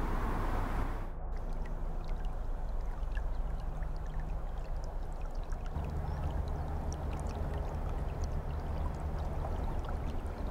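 Narrowboat diesel engine running at low revs with a steady low hum, over water trickling and pouring. The engine hum grows louder about six seconds in.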